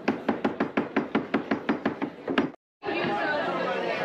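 A fast, even tapping or knocking, about seven strokes a second, over background chatter; it cuts off abruptly about two and a half seconds in.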